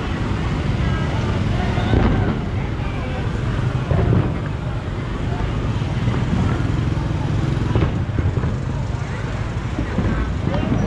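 Busy street traffic at night: motorbikes and cars running past, with people's voices in the background.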